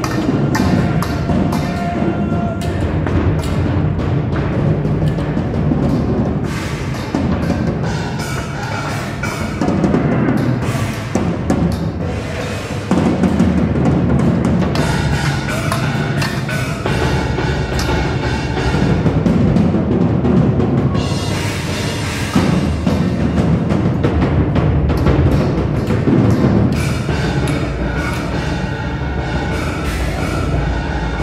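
Percussion music, drums and timpani beating loudly and steadily, with many sharp knocks among the beats.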